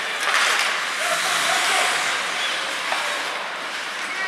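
Hockey skate blades scraping and carving on the ice, a steady hissing scrape that swells about a quarter second in and fades over the last couple of seconds.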